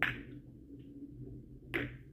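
Three-cushion carom billiard balls clicking together, two sharp clicks: one at the start as the cue ball hits the yellow ball, and another just before the end as it reaches the red ball.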